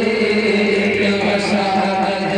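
A man's voice chanting a naat, an Urdu devotional poem, into a microphone, with long held, sliding notes over a steady low drone.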